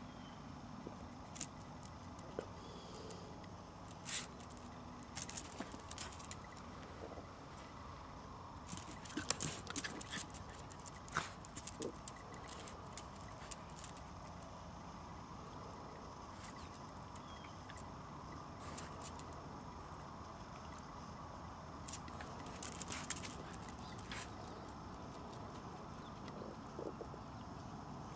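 A small dog and a cat play-fighting on brick paving: scattered clicks and scuffles of paws and claws on the pavers, coming in clusters a few seconds apart, over steady background noise.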